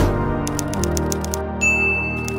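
Typewriter sound effect over sustained background music: a short hit at the start, then a quick run of key clicks, a bell ding about one and a half seconds in, and a few more clicks.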